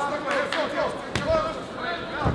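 Voices shouting around a kickboxing ring, with a single sharp thud about a second in from a strike landing.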